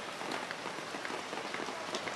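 Steady rain falling on hard surfaces, a dense haze of small drop ticks.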